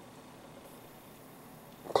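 Faint steady room tone, with no distinct sound in it; a man's voice comes back in right at the end.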